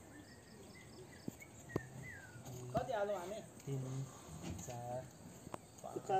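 People's voices talking indistinctly, after a quieter stretch with a few faint high chirps and sharp clicks.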